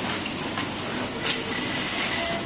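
Steady noisy din of a telephone circuit-board workshop, with two sharp clicks as a board is handled at the test bench, and a faint high tone coming in about a second in.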